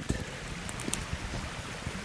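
Wind buffeting an outdoor handheld camera's microphone, an even rushing noise with a few small clicks from handling.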